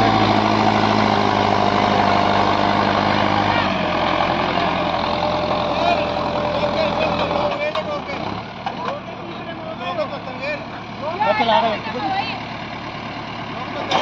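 Mahindra Arjun Novo 605 tractor's 60 hp four-cylinder diesel engine running under load while pulling a 9x9 disc harrow through tilled soil, a steady engine drone that drops in level about four seconds in and again near eight seconds. People's voices are heard over it in the second half.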